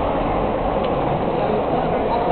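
Steady mixed hubbub of a busy indoor hall, with voices blurred into the background and no single sound standing out.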